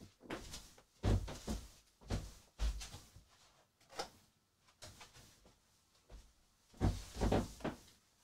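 Scattered bumps and knocks, a thud every second or so and a louder cluster near the end, of someone getting up from a desk and moving about a small room to deal with a ringing phone, picked up by the desk microphone.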